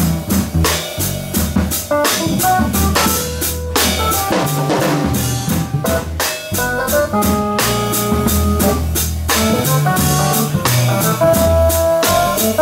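Live jazz from a drum kit and a Yamaha electric keyboard: busy drumming with frequent cymbal hits over keyboard chords and a low bass line.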